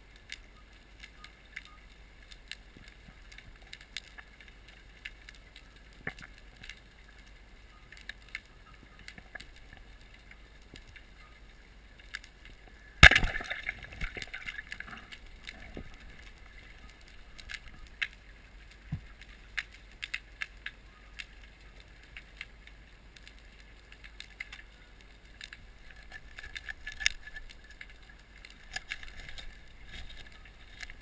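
Underwater: a speargun fires with one sharp, loud crack about halfway through, followed by a short rattling smear. Faint scattered clicks of the underwater surroundings run throughout.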